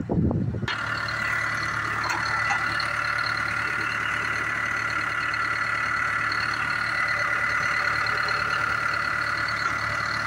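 The diesel engine of a Hyundai Robex 145LCR-9A crawler excavator, running steadily and heard close up at the open engine bay, a low hum with a steady high whine over it. A brief low rumble comes right at the start.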